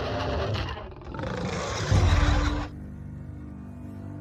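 A giant monster's roar as an animation sound effect, in two long blasts; the second, the loudest, cuts off suddenly about two and a half seconds in, leaving sustained music notes.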